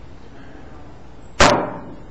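A single sharp knock about one and a half seconds in as a drinking cup is set down on a hard surface, dying away within about half a second.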